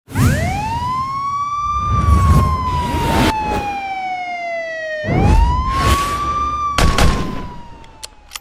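Police siren wail as an intro sound effect: two slow cycles, each rising quickly and then falling slowly. Several whooshing hits with low booms come in between, and it fades out near the end.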